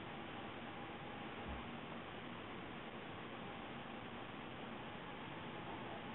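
Faint steady hiss of room tone with a thin constant hum; the hand bend on the box and pan brake makes no distinct sound.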